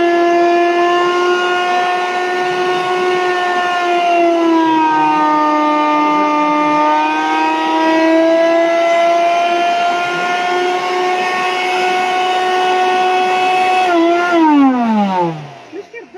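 Electric blender motor (Multifunction Blender Robots MBR-002) running unloaded with no jar fitted, giving a loud, steady high whine. Its pitch sags from about four seconds in and comes back up by about eight. Near the end it is switched off and the whine falls away as the motor spins down.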